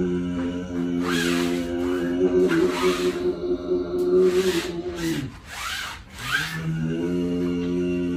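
A low, steady hummed overtone-singing drone, a voice holding one pitch with its overtones ringing above it; about five seconds in it slides down and breaks off, then slides back up a second later. Rubbing, rustling swishes come over it several times, about one, three and six seconds in.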